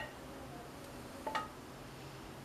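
Quiet kitchen room tone while thick cocoa fudge is scraped out of a metal saucepan into a glass dish with a wooden spoon, with one short faint tap a little past halfway.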